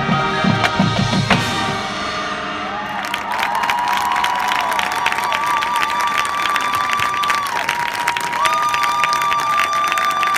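A marching band's brass and percussion hold a final chord, with drum hits, that dies away about two seconds in. Then the crowd applauds and cheers, with long high held calls over the clapping.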